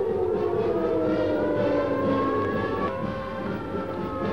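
Civil defense air raid sirens wailing, several slowly gliding tones overlapping, sounding the alert for an air raid drill.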